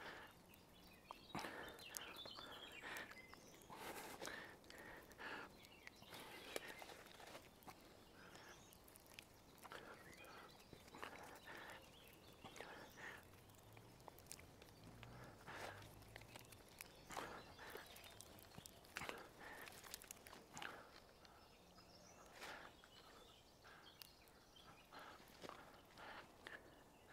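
Faint crackling and rustling of a green branch being twisted by hand, its wood fibres breaking one after another as it is worked into a flexible rope.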